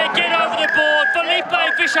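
A man's voice: animated sports commentary, talking loudly with some drawn-out shouted words.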